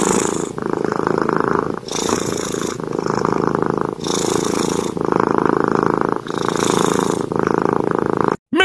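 Tabby cat purring steadily, the purr rising and falling with each breath, about one breath every two seconds.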